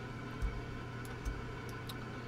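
A few faint computer mouse clicks and soft desk bumps while a graduated filter is dragged on screen, over a low steady electrical hum.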